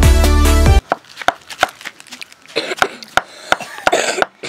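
Music that cuts off abruptly under a second in, then a wooden mallet striking a chisel into wood: a steady run of sharp knocks, about three a second.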